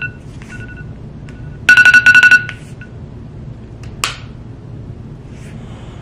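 Electronic beeping on the same two-note tone: a few short beeps, then a loud, quick trill of beeps about two seconds in. A single sharp click about four seconds in.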